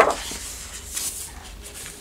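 A sheet of a scrapbook paper pad being flipped over: a sharp paper swish right at the start, trailing off into faint paper rustling and handling.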